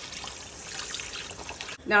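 Beef stock pouring from a carton into a hot, simmering pot of braising liquid, a steady trickling splash that stops near the end.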